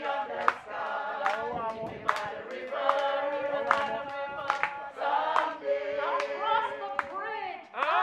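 A group of people singing together unaccompanied, with hand claps on the beat a little faster than once a second.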